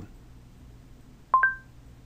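Android Google voice-input chime: two short beeps in quick succession, a lower tone then a higher one, about one and a half seconds in, signalling that listening has ended and the spoken command has been taken.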